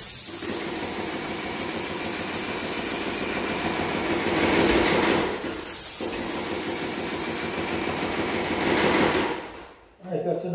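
Airless paint sprayer running steadily, with a hard, high spray hiss that comes on for the first three seconds and again for about two seconds in the middle.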